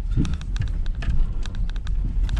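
Car cabin noise while driving: a steady low road and engine rumble, with a patter of light clicks over it.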